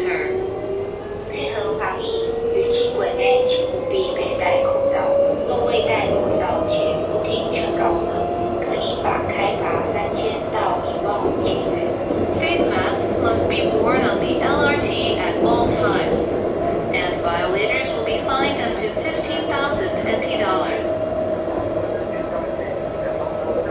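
Light rail tram's traction motors whining, the pitch rising for about eight seconds as the tram accelerates, then holding steady over the running noise of wheels on rail.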